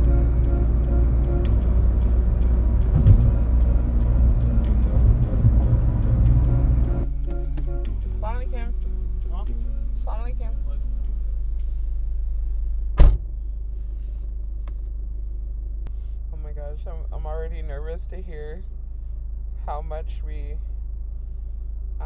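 Steady low road-and-engine rumble inside a car's cabin at highway speed, which drops abruptly about seven seconds in to a quieter steady hum of the stopped car. About thirteen seconds in comes a single loud thump of a car door shutting, and faint voices come and go.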